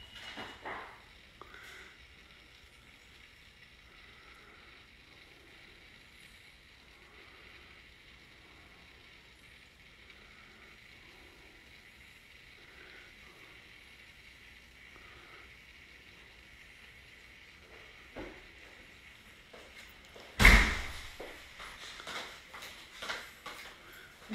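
Faint steady room hum for most of the time. About twenty seconds in, a door bangs shut loudly, followed by a few softer knocks and steps.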